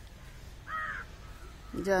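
A crow gives one short caw about two-thirds of a second in, over a faint steady outdoor background. A woman's voice starts near the end.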